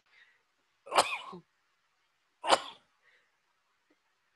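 A man sneezing twice, about a second and a half apart.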